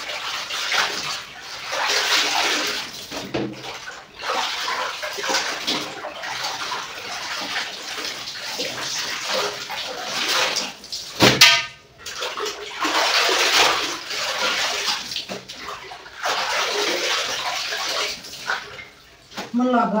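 Clothes being washed by hand in a large tub of water, lifted out and plunged back again and again, with splashing and water pouring off the wet cloth. One sharp, loud splash comes a little past halfway.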